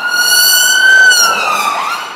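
Emergency vehicle siren wailing, its pitch rising slowly to a peak about a second in and then falling away.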